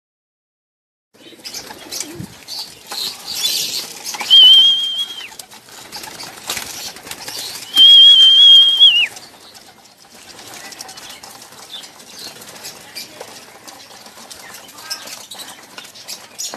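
Racing pigeons in a wire-mesh loft: wings flapping, with scuffling and clicking on the mesh throughout. Two long, steady high whistles, the loudest sounds, come about four and eight seconds in.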